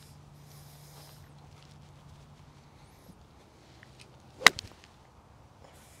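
A mid iron striking a golf ball off range turf: one sharp crack about four and a half seconds in, followed by a couple of faint clicks.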